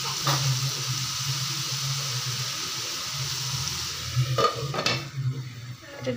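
Shredded vegetables sizzling in hot oil in a nonstick pan, a steady frying hiss with a low hum beneath it. Near the end come two sharp clacks as a glass lid is set on the pan, and the sizzle drops away under the lid.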